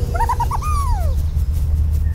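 Cartoon creature call sound effect: about four quick, wavering chirps followed by one long falling glide, over a steady deep low drone.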